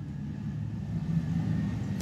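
Low, steady background rumble with a faint hum in it.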